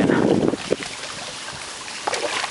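Steady rush of shallow river water around rocks, with wind noise on the microphone, as a hooked channel catfish is drawn in at the surface. The sound is louder in the first half second, then settles to an even wash.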